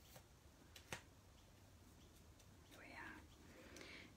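Near silence, with a couple of faint clicks as card and ribbon are handled, one about a second in, and a soft murmur or breath around three seconds.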